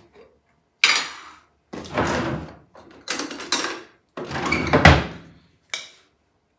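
Kitchen handling sounds as a glass jar's screw lid is worked open and a metal spoon is fetched: about five separate scrapes and clatters. The loudest, near the end, ends in a sharp knock.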